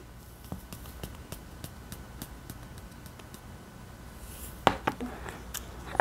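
Faint, scattered clicks and scratches of a small plastic salt shaker being handled as salt is shaken into a glass of water, with a louder click near the end.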